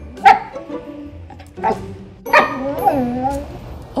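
Siberian husky 'talking': a sharp short bark about a quarter second in, then a drawn-out woo-woo vocalization near the end whose pitch wavers up and down.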